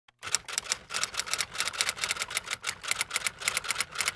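Typewriter keys clacking in a rapid, uneven run of strokes, several a second.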